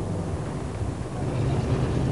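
A motor vehicle's engine running steadily with a low hum, growing slightly louder.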